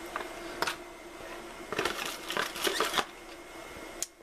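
Paper and cardboard rustling with light clicks and knocks as a paper guide is handled and a coiled USB cable is taken out of a cardboard box: a brief rustle about half a second in, then a longer stretch of handling noise in the middle.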